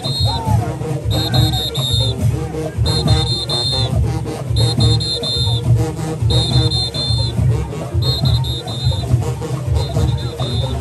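Junkanoo brass band playing while marching: sousaphones, trumpets and trombones over heavy drumming, with a high shrill note that sounds in short blasts about every one and a half to two seconds.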